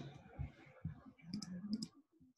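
Computer mouse clicking several times in quick succession in the second half, with faint, dull knocks earlier on.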